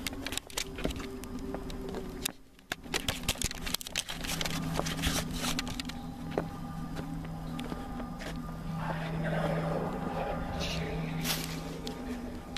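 A low, steady music drone with many scattered clicks and crackles over it. The sound drops almost to nothing for a moment about two and a half seconds in.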